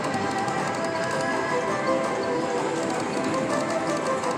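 Video slot machine playing its bonus-round music and reel sounds while the free-spin reels turn, steady throughout.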